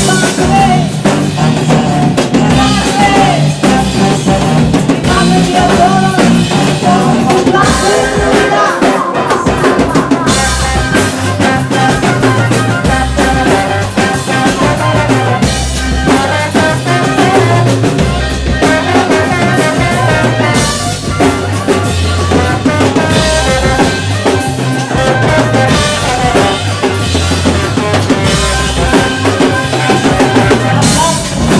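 Live band playing an instrumental passage: a drum kit keeping a steady beat, with rimshots and bass drum, under trombone and other brass.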